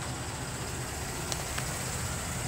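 2016 GMC Acadia's 3.6-litre V6 idling steadily, a low even hum, with two faint clicks about a second and a half in.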